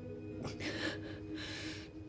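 A woman crying, with two short gasping breaths about half a second and a second and a half in, over soft background music with held notes.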